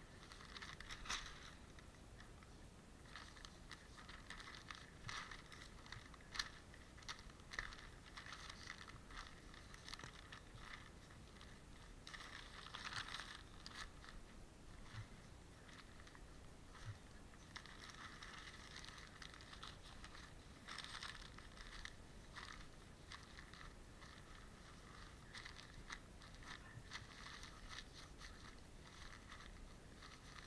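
Newspaper rubbed, scrunched and crumpled against a muskrat pelt on a stretcher to flesh it, heard as faint, irregular bouts of rustling and crinkling with a few sharper crackles.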